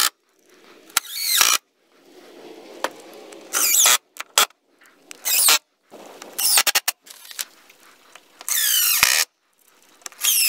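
Cordless drill driving wood screws through a door cross brace into the boards: about five short runs of a whining motor, each falling in pitch, with a few sharp clicks between.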